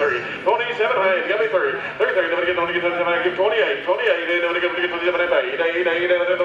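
A man's auctioneer chant, rapid bid-calling held mostly on one steady pitch with quick rising and falling runs.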